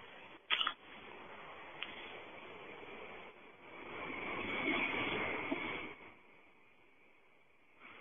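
Steady hiss of a cell-phone recording played back over a telephone line, with a short click about half a second in. The hiss swells about four seconds in and fades away around six seconds. It is an electronic voice phenomenon recording from a graveyard, which the caller says holds a whispered voice, but on first playing the host hears only hiss.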